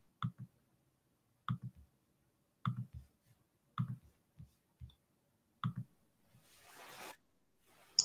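Faint, short clicks, about five of them spaced a second or so apart, with a brief soft hiss near the end.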